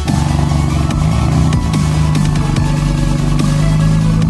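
BMW F80 M3's twin-turbo inline-six running at the quad exhaust tips, a steady low note that rises a little about a second in and then holds. Electronic music plays over it.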